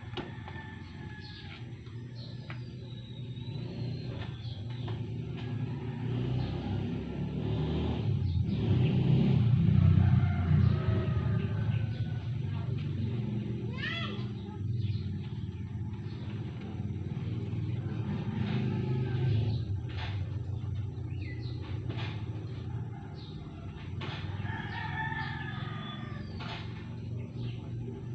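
Rooster crowing several times, the clearest crows about fourteen seconds in and again near the end, over a steady low hum that swells briefly in the middle. A few light sharp clicks are scattered through it.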